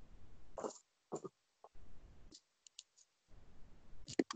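Faint handling noise of the recording device being moved about: a low rumble broken by several short clicks and rustles.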